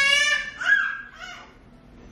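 A toddler's high-pitched voice, babbling or squealing briefly in the first second.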